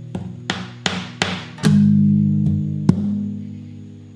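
Acoustic guitar strummed: a quick run of strums in the first half, then a chord left ringing and slowly fading.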